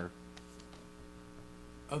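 Quiet, steady electrical mains hum in the meeting room's audio.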